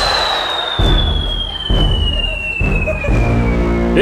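A descending whistle, the cartoon 'falling' sound effect, gliding steadily down in pitch for about four seconds. It opens with a whoosh, and a few low thuds of the accompanying music run underneath.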